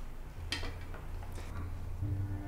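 Tableware clinking on a dinner table: one sharp clink about half a second in and a fainter one later, over a low steady hum.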